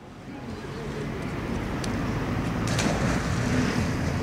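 Outdoor background noise fading in: a steady low hum with faint distant voices mixed in.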